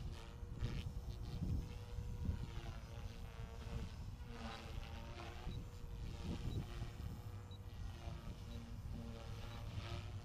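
Align T-REX 450L Dominator electric RC helicopter in flight at a distance: the steady hum of its rotor and KDE450FX electric motor, held at a constant pitch by a governed head speed of 3,500 rpm.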